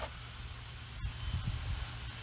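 Steady low background hum under a faint even hiss of outdoor ambience, with no distinct event.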